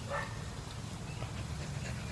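A dog gives a short, soft whimper just after the start, over a steady low hum.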